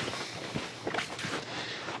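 Faint rustling and a few soft knocks of clothing and leather pack straps as a man shifts a wooden packboard on his back.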